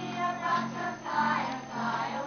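A group of young children singing together. A brief sharp click sounds right at the start.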